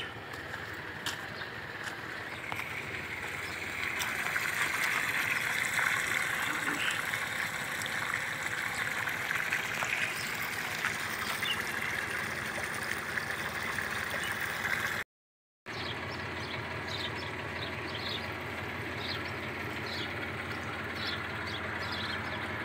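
Water pouring from a black irrigation pipe into a flooded earthen basin around a tree, a steady rushing and gurgling. The sound cuts out briefly about fifteen seconds in, and after that a low steady running of the tanker's engine-driven pump carries on under it.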